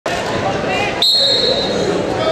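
Referee's whistle: a single sharp, steady high blast about a second in, starting the wrestling bout, over crowd chatter in the gym.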